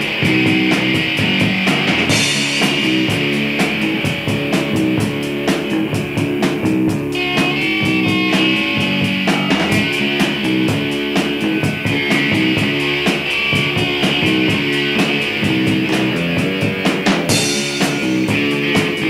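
Punk rock band recording: electric guitars over bass and a drum kit keeping a steady beat, with cymbal crashes about two seconds in and again near the end.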